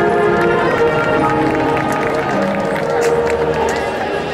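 A high school marching band playing sustained, slowly shifting chords, with a few sharp percussion strikes about three seconds in.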